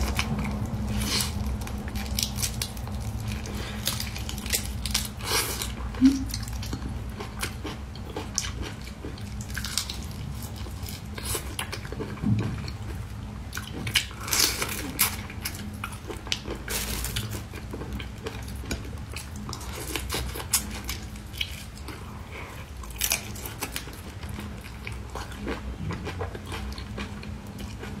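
Close-up biting and chewing of whole shell-on raw prawns dressed in chili-garlic sauce: irregular wet crunches and smacks as the shells and flesh are bitten and sucked, over a steady low hum.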